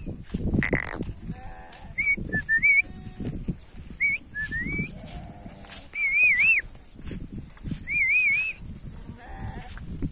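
Sheep bleating several times from a flock, with high, wavering whistled notes in short phrases over them. Low rumbling bursts of noise come and go throughout.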